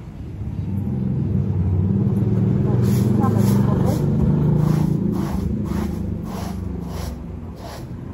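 A long straw broom sweeping a paved yard in short strokes, about two swishes a second from a few seconds in. Under it a loud low rumble swells and fades, wind buffeting the microphone.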